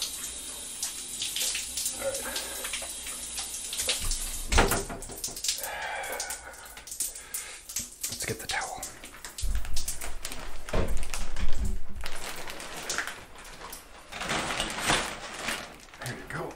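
Bath water sloshing and splashing in irregular bursts, loudest about ten seconds in.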